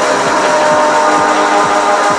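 Techno track in a DJ mix: a steady kick drum about twice a second under a held chord.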